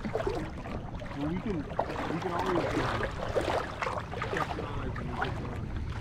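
Wind buffeting the microphone in a steady low rumble over lapping water, with a rushing hiss that swells through the middle. A voice is faintly heard in the background.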